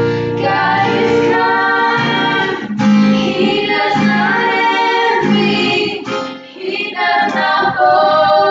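Female voices singing a song to an acoustic guitar strummed along with them.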